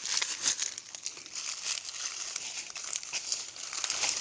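Dry fallen leaves crackling and rustling in quick, irregular crackles as someone rummages and steps through the leaf litter.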